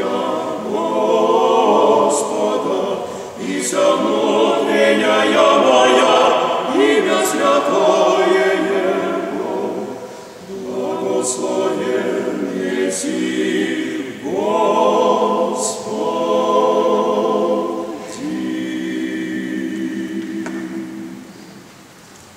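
Male vocal quartet singing Orthodox chant in Church Slavonic a cappella, in phrases of sustained chords. The piece ends on a long held final chord that fades out near the end.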